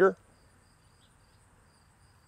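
Crickets chirping faintly, a thin high trill in short repeated pulses.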